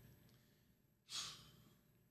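Near silence, broken about a second in by one short breathy exhale from a man: a sigh.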